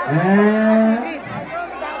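A man's voice through a concert PA drawing out one long vocal note, rising at the start and then held for about a second, before dropping to softer talk.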